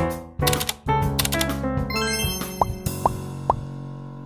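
Outro background music with sharp note onsets. In the second half come three short rising pop sound effects about half a second apart, and the music then fades.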